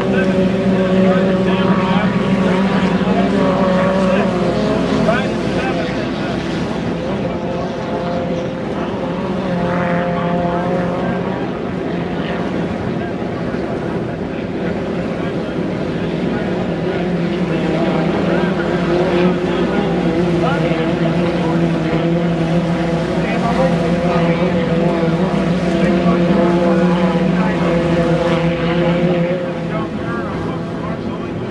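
2.5-litre stock racing hydroplanes running flat out, a continuous engine drone whose pitch slowly rises and falls as the boats race around the course.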